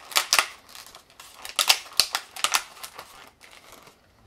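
Thin clear plastic clamshell fruit container being handled, clicking and crackling in several quick clusters of sharp clicks.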